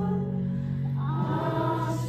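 Youth choir of teenage voices singing, holding a long chord and moving to a new chord about a second in, with a sung 's' near the end.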